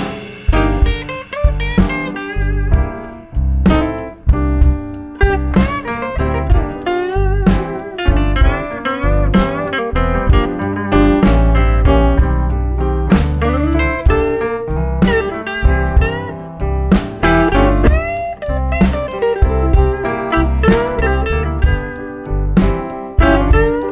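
Live blues band in an instrumental break: an electric guitar solo with bent, sliding notes over a steady drum beat and the rest of the rhythm section.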